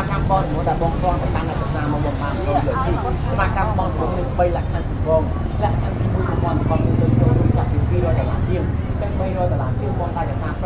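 People talking over a steady low rumble, which swells for a second or two about seven seconds in.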